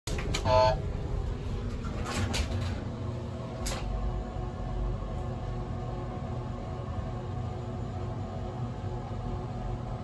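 Mowrey hydraulic elevator: a short beep as a car button is pressed, a few knocks from the doors closing about two to four seconds in, then the steady low hum of the hydraulic pump unit as the car rises.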